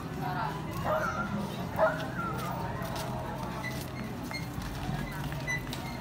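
People talking among themselves in the street over a steady outdoor background, with one louder burst of voice about two seconds in.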